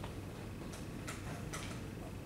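Scattered clicks of laptop keys, about four in two seconds, over a steady low hum of room noise.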